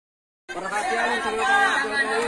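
A crowd of people talking over one another, starting suddenly about half a second in.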